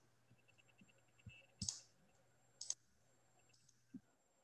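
Near silence with a few faint clicks, two of them sharper, about a second apart in the middle.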